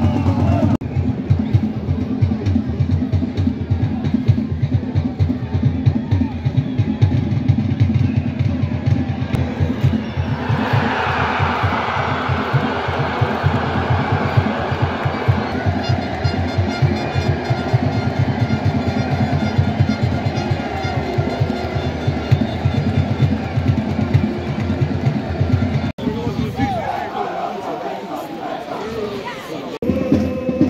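Loud music with a heavy, driving drum beat and sung voices; it grows fuller about ten seconds in.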